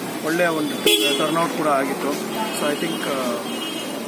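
A man speaking into interview microphones, with a sharp click about a second in and faint steady high tones from traffic in the background.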